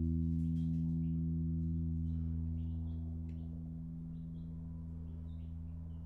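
A sustained low guitar and bass chord ringing out and slowly fading, with faint short high chirps scattered over it.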